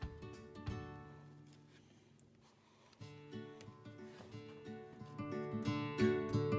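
Background music led by plucked acoustic guitar. It drops quieter about two seconds in, comes back suddenly at about three seconds, and builds louder toward the end.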